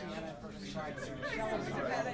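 Indistinct chatter of several reporters talking among themselves at once, with no one voice standing out.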